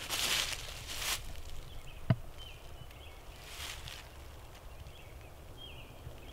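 Outdoor ambience with short bursts of rustling, a single sharp click about two seconds in, and faint high chirps in the background.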